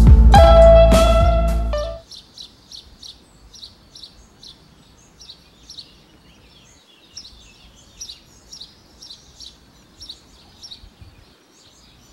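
Guitar background music that cuts away about two seconds in, leaving faint birdsong: many short, high chirps in quick succession.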